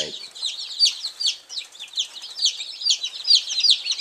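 A large brood of two-day-old chicks peeping together in a brooder: a constant, overlapping chorus of short, high, downward-sliding peeps.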